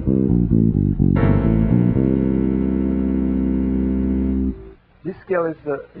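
Electric bass guitar playing a quick run of single notes, the auxiliary diminished scale over a C7 flat-9 chord. About a second in, a chord rings out and is held, then cut off suddenly about four and a half seconds in.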